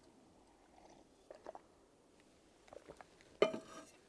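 Faint sipping and swallowing from a titanium cup, then a single clink about three and a half seconds in as the cup is set down on the table.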